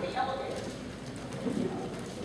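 Indistinct, low-level voices in a meeting room, with short voiced sounds near the start.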